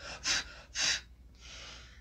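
A woman's breathy, stifled laughter: two short huffs of breath, then a softer, longer exhale.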